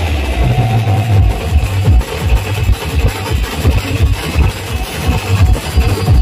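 Live Adivasi timli band music: a line of marching bass drums and snares beats a steady, heavy rhythm under an amplified melody and bass line.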